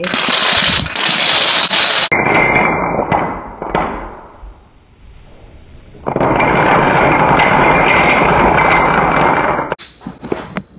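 Plastic dominoes toppling in a chain on a hardwood floor: a rapid, dense clatter of many small clicks. It thins out about halfway through, then picks up loudly again as the domino wall collapses, and cuts off abruptly just before the end.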